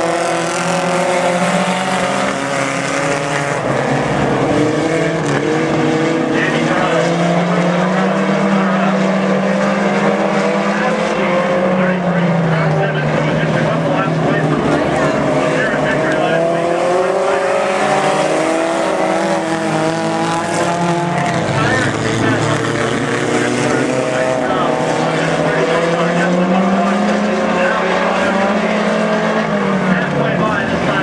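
A pack of four-cylinder Fast Four dirt-track stock cars racing around the oval, several engines running hard at once. Their pitch rises and falls every several seconds as the cars work around the track.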